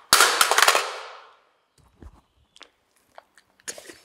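Magazine release on an AR-pattern rifle pressed, then a loud clack with a quick rattle that dies away over about a second as the magazine comes free and drops. A few faint clicks of the rifle being handled follow.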